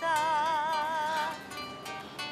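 A song playing on a small portable radio. A woman's voice holds one long note with wide vibrato for about a second and a half, then moves to lower, steadier notes over plucked-string accompaniment.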